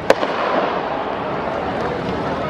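Starting gun fires once, a single sharp crack just after the start, setting off a sprint race.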